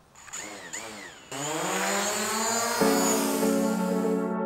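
DJI Mavic Pro quadcopter's motors starting and its propellers whirring up for a test flight after a gimbal repair, mixed with ambient synthesizer music. The music swells in with a rising tone and holds steady from just before the end.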